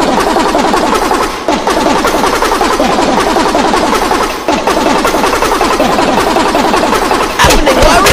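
A dense cacophony of many overlapping, rapidly repeated and pitch-shifted copies of a cartoon's yelling-voice audio, layered into a stuttering musical collage. Short falling pitch strokes pack closely together, and the sound grows louder near the end.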